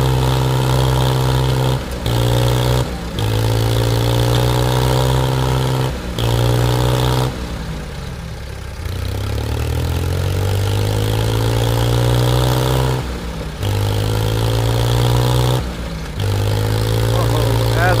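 Diesel tractor engines of a Mahindra 575 and a Mahindra 265 running hard under heavy load in a tractor tug-of-war. The engine note dips and recovers several times. About eight seconds in it sinks low, then climbs steadily back up over a few seconds.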